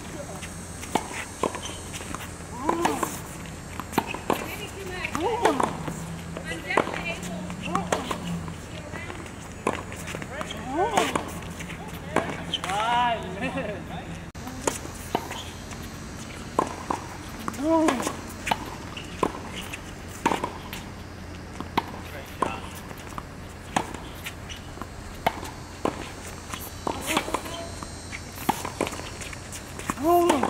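Tennis ball struck back and forth with rackets in a baseline rally on a hard court: sharp hits about every second or two, with short vocal grunts on some shots.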